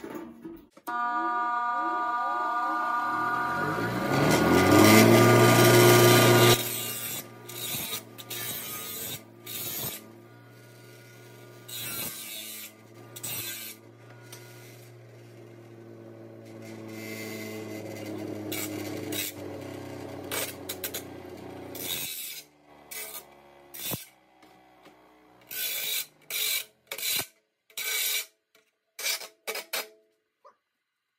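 An 8-inch bench grinder switched on and spinning up, then grinding the edges of a steel plate for a couple of seconds, loud and harsh. Once off, its motor hum falls slowly in pitch until the wheels stop, about twenty seconds in, followed by scattered clicks and knocks of handling.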